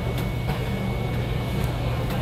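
Steady low droning hum of airport-terminal background noise heard from behind the window glass, with a faint high steady tone above it.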